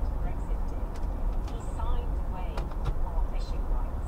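Steady low rumble of a car's road and engine noise heard from inside the moving car's cabin, with faint short chirping sounds and a few light clicks over it.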